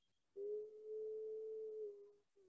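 A woman's voice holding a steady, drawn-out hum for about a second and a half, starting a third of a second in, its pitch dipping slightly as it begins and ends.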